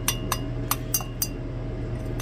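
Glass stirring rod clinking against the inside of a glass beaker of liquid: about five light taps in the first second and a half, each with a short ring.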